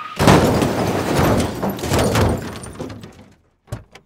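Sound effect of a car crashing into garbage cans: a loud crash just after the start, then a clatter of knocks dying away over about three seconds. Near the end come two short thuds of car doors.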